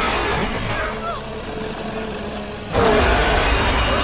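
Film soundtrack: tense score mixed with loud rushing, rumbling sound effects, swelling louder about three seconds in.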